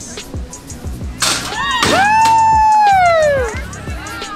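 Dunk tank dropping its rider into the water with a sudden splash about a second in, followed by a long, high cheer that falls slowly in pitch, over background music with a steady beat.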